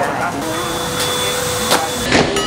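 A steady hum with a low and a high tone held underneath, then a single sharp knock near the end as an arrow from a toy bow strikes the balloon target board.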